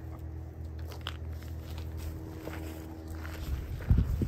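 Soft footsteps and faint rustling of garden plants over a steady low rumble, with a short louder low bump just before the end.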